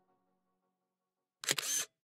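A camera shutter sound effect, one short snap about one and a half seconds in, marking a phone selfie being taken.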